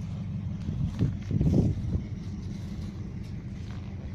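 Low, uneven outdoor rumble that swells briefly about a second and a half in.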